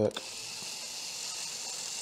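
Cordless drill running steadily with a steady high whir, its small bit drilling into the aluminium mirror-mount thread of a motorcycle's front brake master cylinder, where an earlier bit has snapped off.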